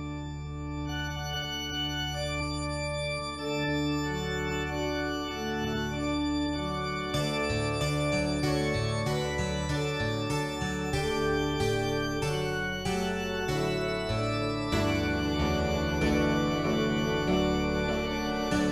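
Instrumental music opening on sustained organ chords with a steady low bass. About seven seconds in, quicker separately struck notes join over the held chords, and the texture grows fuller near the end.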